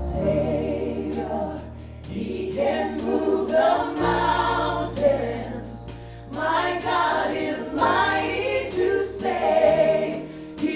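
Live worship band: women's voices singing together with a bass guitar holding low notes underneath and drums.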